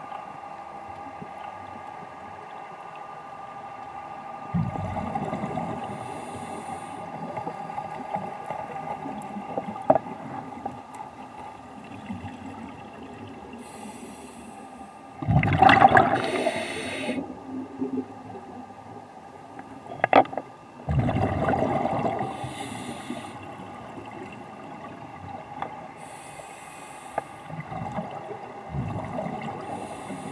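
Scuba regulator breathing heard underwater: several surges of exhaled bubbles lasting a second or two, the loudest about fifteen seconds in, with short hissing inhalations between them, over a steady underwater hum.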